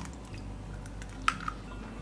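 A fresh egg being broken open over a ceramic mixing bowl and dropped in: two short clicks of shell a little past a second in, over faint room hum.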